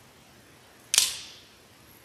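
A single sharp snap about a second in, ringing briefly in a reverberant church: a large altar host being broken in two at the fraction rite.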